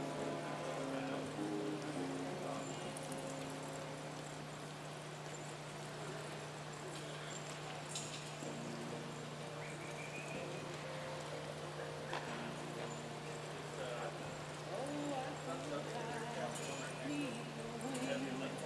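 Indoor arena ambience around horses working cattle on a dirt floor: horses moving, murmuring voices and faint background music over a steady low hum, with a few sharp knocks scattered through.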